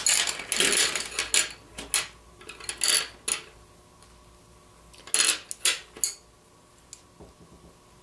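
Wooden pencils clinking and rattling against each other as one is picked out and another set down: a run of clicks over the first few seconds, another short burst about five seconds in, then only faint handling.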